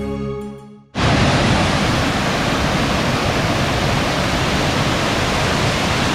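Background music fades out in the first second. About a second in, a loud, steady rush of a mountain stream tumbling over rocks starts suddenly and runs on.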